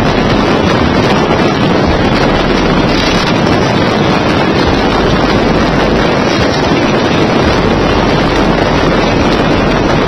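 Steady wind noise buffeting the microphone, mixed with the road and traffic noise of a truck moving at highway speed.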